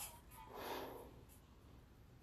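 A single short breath, close to the microphone, about half a second in.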